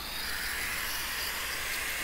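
Angle grinder with a segmented diamond blade in a dust-extraction shroud cutting along a mortar joint between bricks, a steady grinding hiss.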